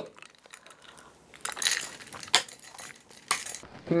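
Glass of iced coffee clinking as it is handled: a few irregular light clinks and rattles, loudest about a second and a half in and again shortly before the end.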